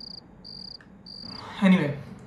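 Cricket chirping: a high, steady chirp repeated evenly about every 0.6 seconds, three times, followed by a short burst of a person's voice near the end.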